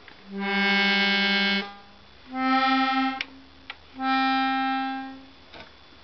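Hohner button accordion (squeeze box) sounding three held chords, each about a second long with short gaps between, as the bellows are pushed in. The first chord is lower and the next two are higher and alike. It is a quick sound test showing that the reeds still play.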